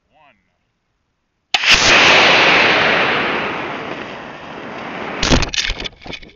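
Estes A8-3 model rocket motor lighting about a second and a half in, heard from a camera riding on the rocket: a sudden loud rush of motor burn and airflow that fades over about three seconds of flight. Near the end the ejection charge fires with a cluster of sharp pops and rattling.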